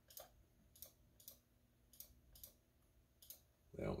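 Computer mouse clicking: a series of faint, irregularly spaced clicks as options are picked in the software.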